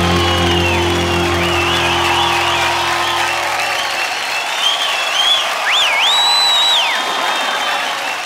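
Studio audience applauding and cheering at the end of a song, while the band's final held chord rings on and fades out about halfway through.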